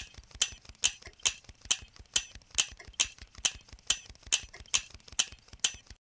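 A clock ticking steadily, a little over two loud ticks a second with fainter ticks in between.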